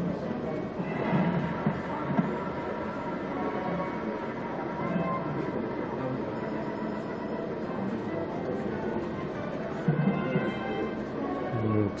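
Slot machine game music and reel sound effects from the Centurion slot playing steadily through a run of free spins.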